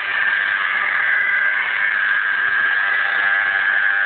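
Radio-controlled Bell 222 scale model helicopter in flight: a steady high-pitched whine from its drive and rotors.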